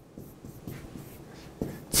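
Handwriting on a board: faint scratching strokes of the writing tool, with a few small taps as letters are formed.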